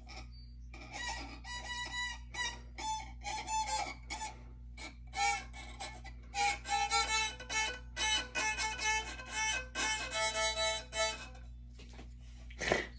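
Violin being bowed: a string of notes and short phrases starting about a second in, broken by brief pauses, and stopping near the end.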